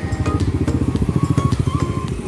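Motorcycle engine running as it rides along, a fast even pulsing, with background music over it.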